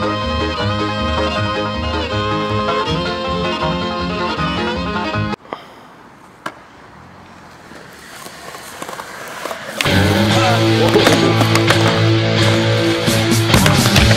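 Music stops abruptly about five seconds in, leaving the live sound of a skateboard on concrete: two sharp board clacks about a second apart, then wheels rolling, growing louder. About ten seconds in, louder music with a strong beat starts over it.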